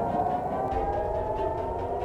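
Civil-defence warning siren wailing, with several overlapping tones slowly gliding in pitch, one falling and another rising.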